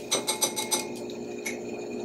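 Small plastic spoon stirring a liquid mixture and tapping against the side of a glass bowl: a quick run of light clicks in the first second and one more about halfway through, over a faint steady hum.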